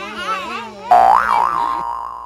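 Cartoon 'boing' sound effect, a springy tone that starts suddenly about a second in, its pitch wobbling up and down as it dies away over about a second and a half. Before it, children's voices call out 'bye'.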